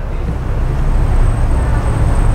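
A motor vehicle's engine running with a low, steady rumble that grows slightly louder, with a faint steady high whine above it.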